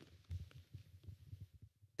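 Near silence: faint, irregular low thuds over a quiet hum.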